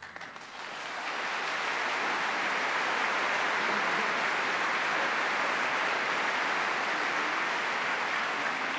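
Opera house audience applauding at the end of an aria, swelling over the first second and then holding steady.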